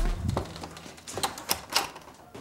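A door being handled: a click of the lever handle and latch, then a handful of sharp clicks and knocks in the second second.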